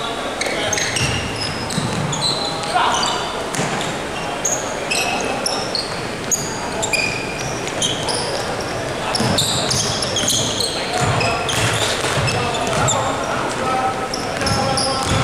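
Basketball game play on a hardwood court: the ball bouncing in repeated low thuds, sneakers squeaking in short high chirps all through, and players' voices calling out.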